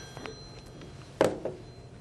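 Mobile phone ringtone, its steady tones dying away just after the start as the phone is picked up; a short vocal sound about a second in, then quiet room noise.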